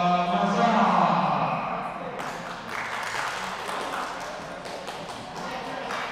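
A man announcing through a microphone and hall speakers, his voice drawn out in a long call for the first two seconds, then quieter, echoing hall noise with a few sharp knocks.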